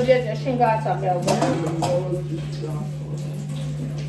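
A woman talking for about the first two seconds, then quieter room sound, over a steady low hum.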